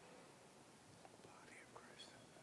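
Near silence: faint room tone, with a few faint ticks and brief faint wavering sounds.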